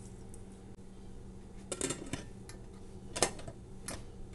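Stainless steel pressure cooker and its lid clinking as the lid is handled and set on, a few light metal knocks with the loudest about three seconds in, over a steady low hum.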